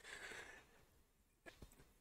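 A man's faint breath, a soft exhale lasting about half a second, then near silence with a small click about one and a half seconds in.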